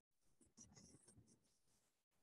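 Near silence on a video-call line, with a few faint, soft scratching or rustling sounds about half a second to a second in.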